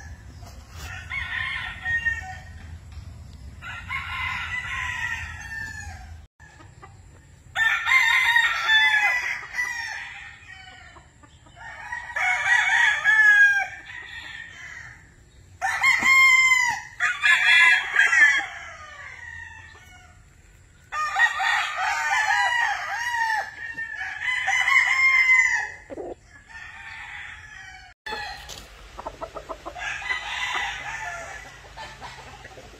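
Several gamefowl roosters crowing, one crow after another. The crows often overlap and are spaced by gaps of a few seconds.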